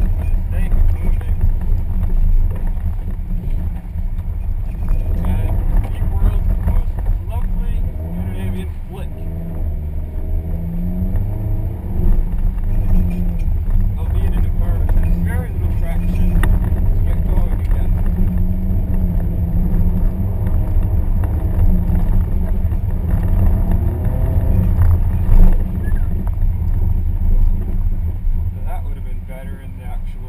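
Naturally aspirated Subaru boxer engine heard from inside the cabin, revving up and down repeatedly as the car is driven hard through a snow autocross course, with a steady low rumble underneath.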